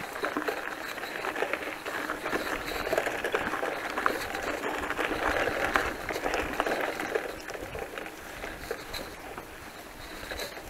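Bicycle tyres rolling over a rough dirt and grass track, with crackling, small clicks and rattles from the bike, picked up by a camera mounted on the handlebar. Louder through the middle, easing off near the end.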